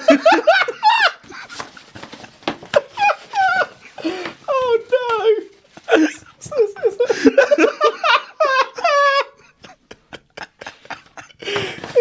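People laughing hard in repeated fits, with short rustling noises between the bursts.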